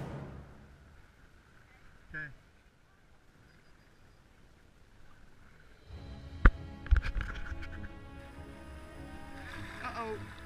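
Background music fading out in the first second, then near quiet. About six seconds in, river water and paddling noise from an inflatable kayak begin, with two sharp knocks about half a second apart, and voices start near the end.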